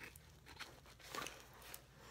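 Near silence with a few faint handling noises, the clearest about a second in, as a wrapped package is set down and small orange-handled craft snips are picked up from a desk.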